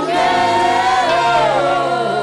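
A gospel worship group singing together into microphones, voices holding long notes with vibrato over a low sustained note.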